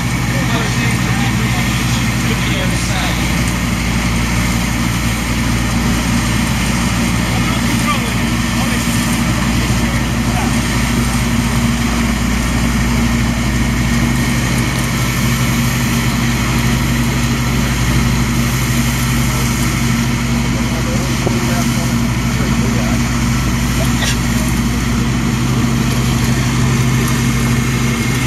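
1991 Sampo-Rosenlew 130 combine harvester working through standing winter barley: its diesel engine and threshing machinery drone on at a steady pitch.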